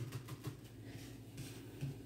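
Faint handling of playing cards on a felt-covered table, with a soft click at the start and a light tap near the end, over quiet room tone.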